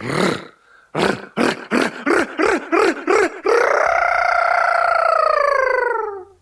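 A voice performing sound poetry without words. It gives a short burst, then about eight quick clipped syllables, then one long held tone that sinks slightly in pitch toward the end.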